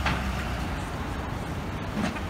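Low, steady rumble of an idling truck engine, heaviest in the first half second and then easing, with a short knock right at the start.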